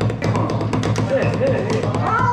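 Drumsticks tapping quick strokes on a rubber drum practice pad during a warm-up, over music with a steady pulsing bass beat.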